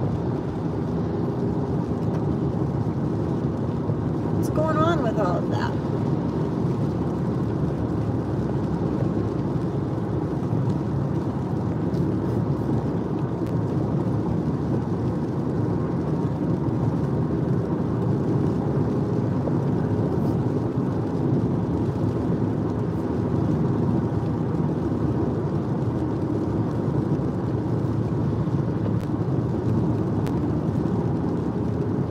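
Steady road and engine noise inside a moving car's cabin, a continuous low rumble. A short wavering pitched sound comes in about five seconds in, lasting about a second.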